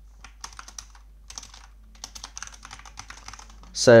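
Typing on a computer keyboard: short runs of quick key clicks with brief pauses between them.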